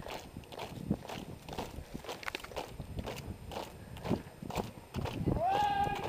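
Hard-soled boots of a squad marching in step on concrete, striking together about twice a second. Near the end a single long drawn-out shouted call rises and holds.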